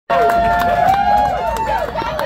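Concert crowd shouting and cheering, many voices overlapping with held and sliding calls, loud and close to the microphone.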